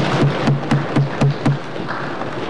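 Applause in a legislative chamber with rhythmic thumping on wooden desks, about four thumps a second, dying away about one and a half seconds in.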